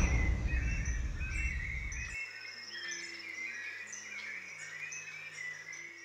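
Many small birds chirping and calling in short repeated notes. Under them a low rumble fades and cuts off about two seconds in, followed by a few soft low notes.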